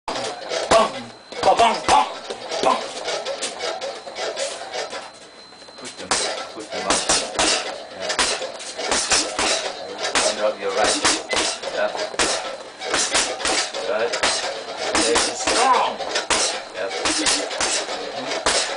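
Boxing gloves striking a hanging heavy bag in quick repeated jab-cross punches, a rapid run of sharp smacks a few per second. There is a brief lull a little before the middle, then steady punching resumes.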